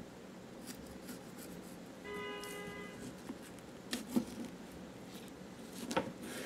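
Knife slicing through a cactus pitaya's skin and juicy flesh on a wooden cutting board: faint scrapes and small clicks, the loudest a sharp tap about four seconds in. A short, steady pitched tone sounds for about a second near the middle.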